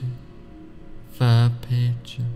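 Steady background music with faint held tones, and a man's low, drawn-out voice over it for under a second starting about a second in.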